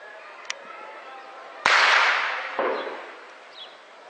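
A single loud shell blast from tank shelling, sudden and sharp, dying away over about a second and a half. A second crack comes about a second after the first, then the sound rolls off as echo.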